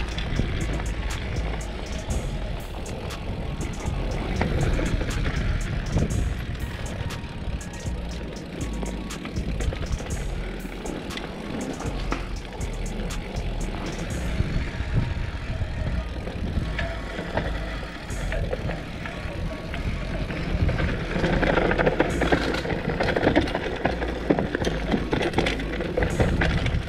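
Mountain bike descending a rough dirt trail at speed: a steady low rumble of wind and tyres on the dirt, with frequent sharp clicks and rattles from the bike over roots and bumps.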